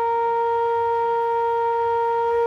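Bansuri (bamboo transverse flute) holding one long steady note.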